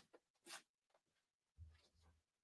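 Near silence: room tone, with one faint click about a quarter of the way in.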